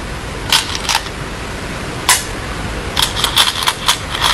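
Go stones clicking against one another in a wooden bowl as a hand picks through them: a few separate clicks, then a quick run of clatter near the end, over a steady hiss.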